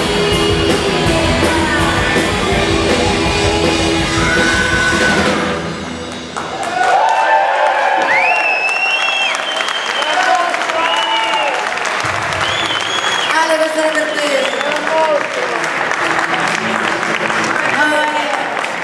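Live rock band with drums, bass and electric guitars playing loud, cutting off about five and a half seconds in. A woman then sings long, sliding notes almost unaccompanied, and audience applause builds toward the end.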